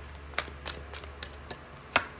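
A tarot deck being handled by hand: a string of about seven sharp, irregular clicks and snaps of cards, the loudest just before the end.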